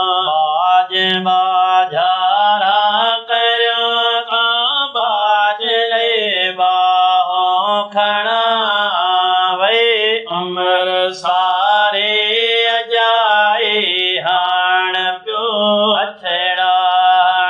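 Two men singing an Urdu naat together in a chanting style, with long held, wavering notes and short breaths between phrases.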